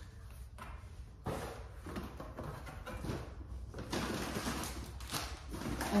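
Grocery packaging and a paper grocery bag being handled: irregular rustling and crinkling with light knocks, picking up about a second in.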